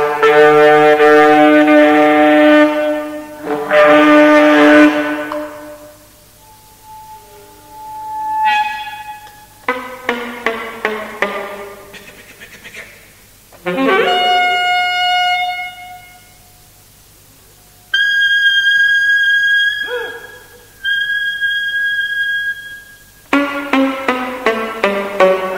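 Unaccompanied alto saxophone in E-flat playing contemporary music: long held tones rich in overtones, a run of quick short notes, then, after a brief pause, high sustained notes with breaks between them.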